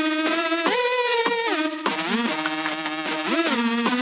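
Background music: an electronic melody of held notes that slide up and down in pitch.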